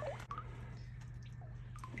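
Faint drips of seawater falling from a freshly lifted frilled anemone and gloved hand back into the water, with a few small ticks near the start. A low steady hum runs underneath.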